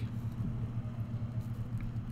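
Steady low hum of background noise, unchanging, with a faint tick near the end.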